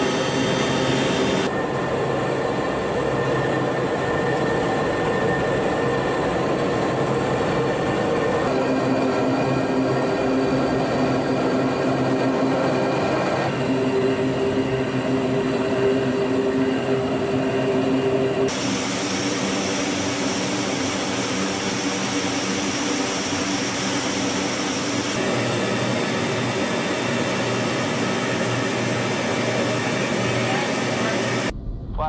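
Steady drone of the LC-130H's four Allison T56 turboprop engines and propellers, heard from inside the aircraft, with several fixed humming tones. The tone of the drone shifts abruptly several times.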